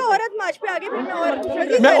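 Speech only: people talking over each other in a crowd.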